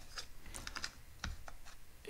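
Faint, irregular light clicks and taps as a wooden ruler and a small plastic bird figurine are handled and held against each other.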